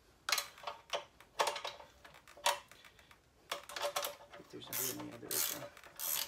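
A wrench clicking against the 10 mm chain adjuster bolt at an electric scooter's rear axle, backing the adjuster off to slacken an overtight chain: four sharp metal clicks in the first three seconds, then two brief scraping sounds near the end.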